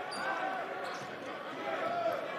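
A basketball being dribbled on a hardwood court, over the steady murmur of an arena crowd.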